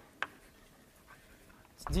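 Quiet writing on a board: one sharp tap about a quarter second in, then faint scratching.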